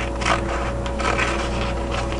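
Scissors cutting through a piece of canvas to make a repair patch: a run of short snips, a few a second.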